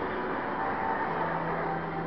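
Steady background noise of a large gymnasium hall, with a low steady hum coming in about a second in.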